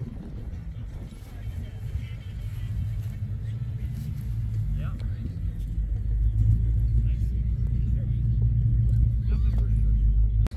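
A car engine running nearby: a low, steady rumble that grows louder over the second half.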